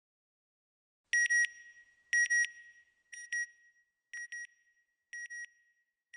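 Electronic double beep, a high tone repeated five times about a second apart, starting about a second in; the first two are the loudest and ring on briefly.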